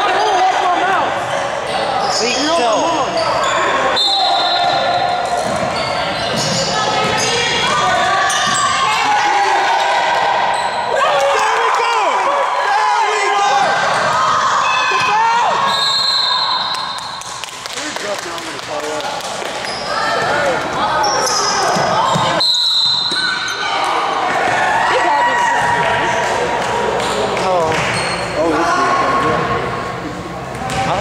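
Basketball game sounds in a gym hall: indistinct voices and shouts of players and onlookers, a basketball bouncing on the hardwood floor, and a few brief high-pitched squeaks.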